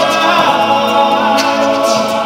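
A group of voices singing a cappella in harmony, holding chords with no instruments.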